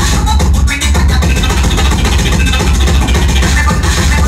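Loud electronic dance music from a DJ set over a club sound system, with a strong deep bass and fast, dense drum hits.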